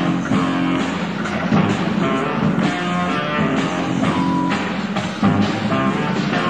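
Live rock band playing an electric-guitar-led riff over bass and drums, the opening instrumental bars of a song before the vocal comes in.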